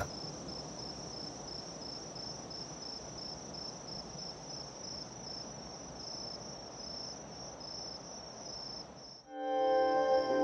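Crickets chirping in a steady, even pulse over faint outdoor background noise. Near the end the chirping cuts off and music with sustained notes comes in.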